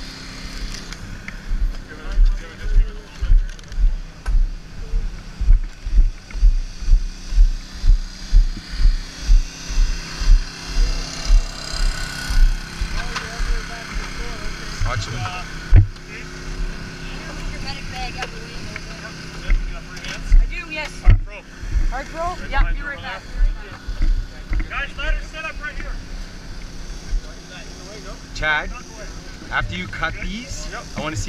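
A small engine runs steadily under strong low thumps about twice a second that stop about twelve seconds in, followed by a few sharp clicks and faint voices.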